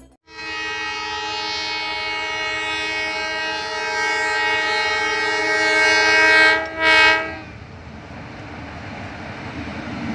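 A diesel locomotive's multi-tone air horn sounds one long chord of about six seconds, then a short, louder blast as the passenger train approaches. After the horn stops, the rumble of the oncoming train grows steadily louder.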